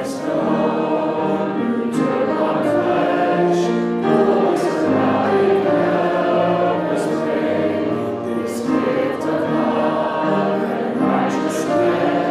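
Congregation singing a hymn together, held notes moving in a steady tune.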